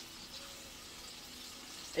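Chopped onions and peppers sizzling gently in a frying pan: a steady low hiss.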